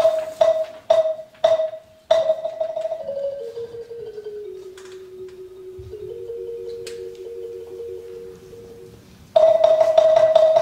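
Jazz band starting a tune: a quick repeated figure of bright, struck notes, then a quieter stretch of slower falling notes that settle into held tones, before the loud repeated figure comes back near the end.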